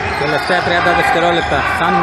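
A man's voice speaking, echoing in a large indoor sports hall.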